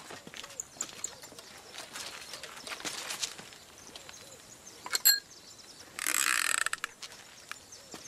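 Quiet outdoor ambience with faint animal calls and scattered clicks, a brief sharp ringing click about five seconds in, and a short hissing noise about a second later.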